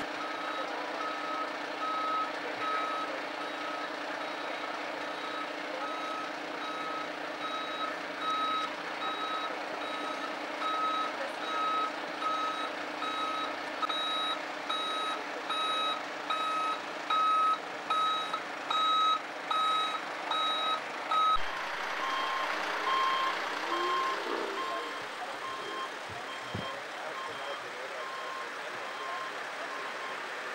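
Vehicle reversing alarm beeping steadily, about one and a half beeps a second, over the low hum of idling emergency vehicles. About two-thirds of the way in it gives way to a quieter, lower-pitched beeping.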